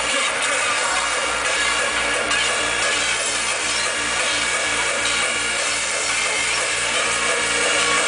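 Hardcore gabber dance music playing loud over a big club sound system, its distorted kick drum beating at a fast, steady pace of about three beats a second.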